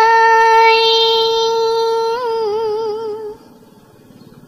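A woman's voice chanting a verse of Hòa Hảo doctrinal poetry in the Vietnamese ngâm style, holding one long high note that wavers into vibrato about two seconds in and ends a little past three seconds.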